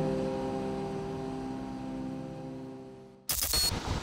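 A held synth chord of background music fading out slowly. About three seconds in, a sudden burst of outdoor street noise cuts in.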